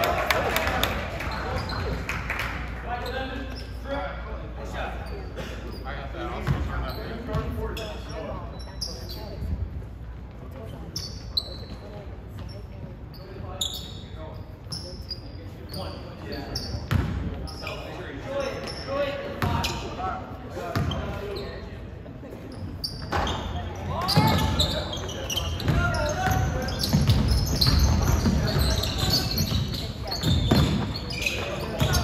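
Basketball game sounds in an echoing gym: the ball bouncing on the hardwood floor, sneakers squeaking and players' voices. It gets louder and busier for the last several seconds.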